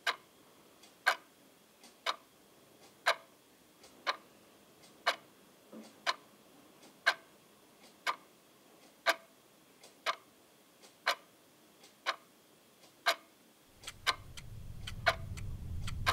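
Analogue wall clock ticking steadily once a second, each loud tick preceded by a faint one. About two seconds before the end, a low rumble fades in beneath the ticking.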